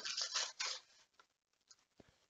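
Cardboard and plastic blister packaging rustling and scraping as it is handled for under a second, followed by a few faint clicks.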